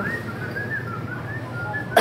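A high, thin whistled tune of short wavering notes, heard over a steady low background hum, with a sharp click at the very end.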